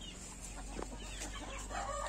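Chickens in a yard, with faint scattered small sounds, and a rooster's crow beginning near the end, held at one steady pitch.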